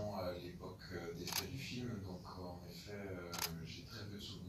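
A person speaking, with two sharp clicks, one about a second in and one near the end.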